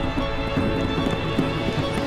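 Background score music: sustained held tones over a quick, rhythmic percussive pulse.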